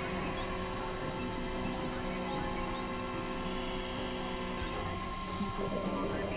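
Experimental electronic drone music: several steady synthesizer tones held together over a low hum, with faint short rising chirps up high. The drone's texture shifts a little before the end.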